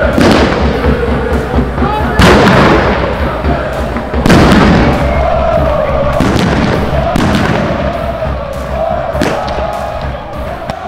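Football crowd chanting in the stands while firecrackers go off. Three loud bangs ring out just after the start, about 2 s in and about 4 s in, with smaller cracks later.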